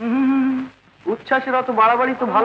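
A voice holds one steady note for under a second, then goes on in drawn-out phrases that glide up and down in pitch.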